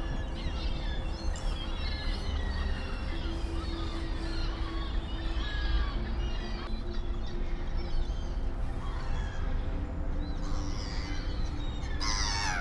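A flock of gulls and other waterbirds calling on a pond, many short overlapping calls, over a steady low rumble.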